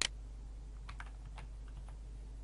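Keystrokes on a computer keyboard as a number is typed: one sharp click at the start, then about five lighter, quicker taps in the second half, over a low steady hum.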